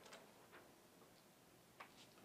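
Near silence: quiet room tone with a few faint ticks, the sharpest one near the end.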